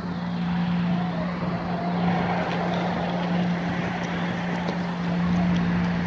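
A steady mechanical hum holding one pitch, over a constant wash of outdoor background noise.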